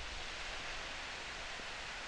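Steady, even outdoor ambient hiss with no distinct event in it.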